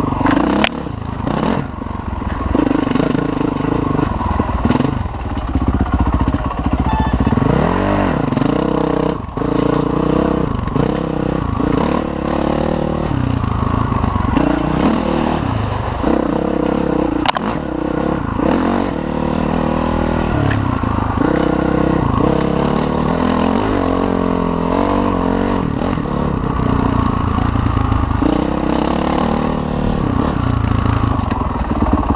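Honda CRF450 dirt bike's single-cylinder four-stroke engine, revving up and falling back again and again as it is ridden over rough trail, with occasional sharp knocks from the bike.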